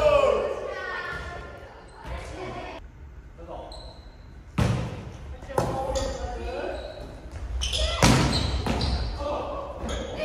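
Volleyball being struck by hands: a few sharp slaps, the first about halfway through, another a second later and one near the end, echoing in a gymnasium, with players calling out.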